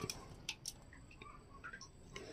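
Faint ticks and light crackling of shredded fresh bamboo shoots being handled in a glass jar, with two sharper clicks about half a second in.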